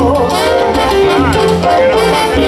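Salsa orchestra playing live, loud, with a trombone section holding sustained notes over bass and Latin percussion.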